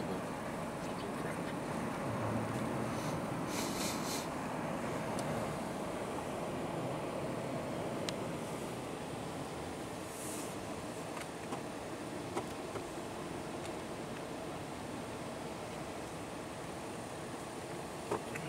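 Steady rushing of strong wind around a car, heard from inside the cabin during a snowstorm, with a few faint ticks partway through.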